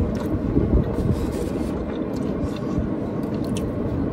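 Steady low rumble of a car running, heard inside its cabin, with a few faint clicks of chewing and handling food.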